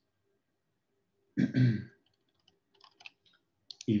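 A man clears his throat once, followed by a scatter of faint computer-mouse clicks.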